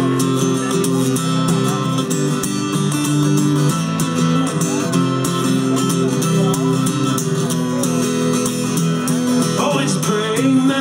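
Acoustic guitar strummed in a steady rhythm, amplified through a PA, the chords changing every second or so.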